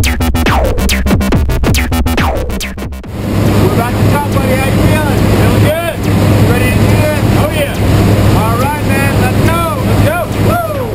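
Electronic dance music with a pulsing synthesizer beat for about three seconds, then it cuts off to the steady engine drone inside a small jump plane's cabin, with voices shouting over it.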